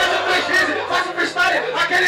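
A freestyle battle MC rapping loudly in Portuguese into a handheld microphone through a PA, with crowd noise behind him.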